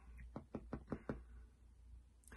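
A quick run of about seven light, muffled taps or knocks, packed into under a second.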